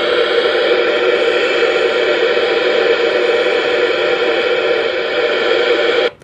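Weather radio receiver set to channel one, playing loud, steady static through its small speaker and cutting off abruptly at the end. No station is coming in because channel one is down.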